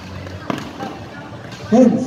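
A single sharp knock of a basketball bouncing on the court about a quarter of the way in, followed near the end by a loud, short shout.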